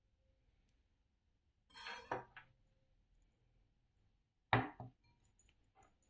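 Kitchen handling on a wooden cutting board: a short scrape and knock about two seconds in, then a sharper, louder knock with a couple of lighter taps, as knife, egg halves and a glass bowl are moved about.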